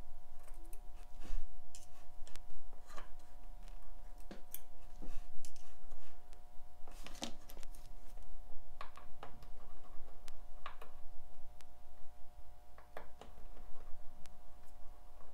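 Irregular small metallic clicks and taps of steel tweezers and a small screwdriver working on a Seiko 6106 automatic watch movement in a plastic movement holder while it is taken apart, over a steady faint background hum.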